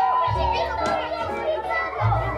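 A group of children cheering together in one drawn-out shout, over background music with a steady bass.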